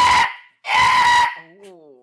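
A man imitating a seagull's screech with his voice: two loud, held cries of about half a second each, with a short gap between them.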